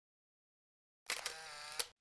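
Dead silence for about a second, then a short, faint transition sound effect of under a second, a steady tone with a click at its start and another at its end.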